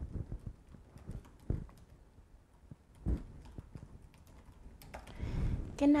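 Typing on a computer keyboard: a run of irregular key clicks, with a couple of louder knocks among them.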